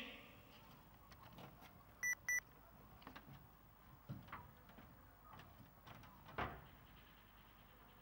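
Quiet background broken by two short electronic beeps in quick succession about two seconds in, followed by a few faint knocks and a thump about six and a half seconds in.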